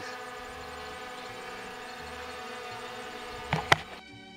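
DJI Mini 4 Pro drone hovering low, its propellers giving a steady whine made of several tones. A sharp knock near the end.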